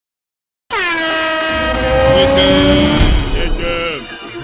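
Title-animation sound effect: a loud sustained tone of several pitches that starts suddenly just under a second in, dips in pitch at its onset, and slides down in pitch near the end.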